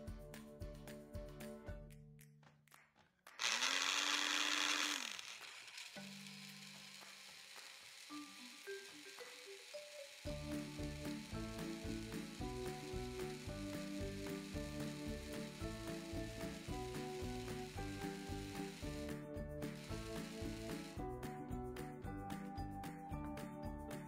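Personal blender grinding tomato, onion, bell pepper and garlic into a paste. The motor runs loud for about two seconds, a few seconds in, its pitch climbing as it starts and dropping as it stops. Background music with a steady beat fills the rest.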